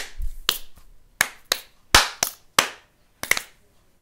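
Fingers snapping, about eight sharp snaps in an uneven rhythm.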